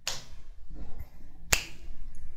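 Two sharp clicks of computer keyboard keys being struck, one at the start and a louder one about a second and a half in, as a terminal command is entered.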